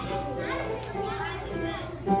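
Young children's voices chattering and calling out, some with swooping rises and falls in pitch, over a few held musical notes.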